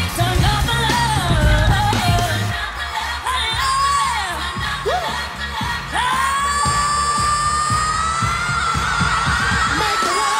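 Live pop performance: a female lead vocal sung over a band or backing track with a steady beat. From about six seconds in she holds one long high note with vibrato that climbs slowly in pitch.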